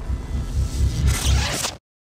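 Outro sound-effect sting: a deep, pulsing low rumble under a whooshing swell that rises about a second in, then cuts off abruptly near the end.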